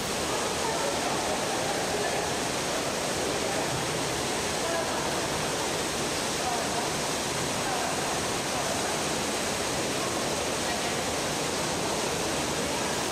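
Artificial indoor rain: a dense, constant downpour of water from a ceiling grid of valve-controlled nozzles, falling onto a grated floor. It makes a steady, even hiss like heavy rain.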